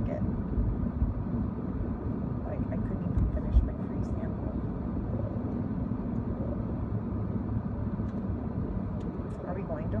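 Steady low rumble of road and engine noise inside a moving car's cabin, with a single thump about three and a half seconds in.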